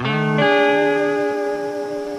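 Short electric guitar music sting: a chord starts suddenly, its low notes change about half a second in, and it rings on and fades. It is a scene-transition bumper.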